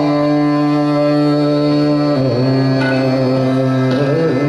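Hindustani classical music with harmonium and tanpura: long held notes over a steady drone, moving to a lower note about halfway through with a brief wavering glide.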